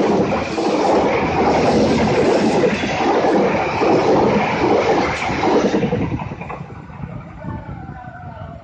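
Passenger train coaches rolling past at speed, with loud wheel-on-rail noise and rumble. The sound drops away about six seconds in as the last coach clears and the train recedes.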